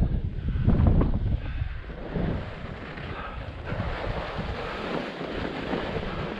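Wind buffeting the microphone of a camera on a moving skier, with skis hissing and scraping over spring snow during the descent. It is louder for about the first second and a half, then settles lower.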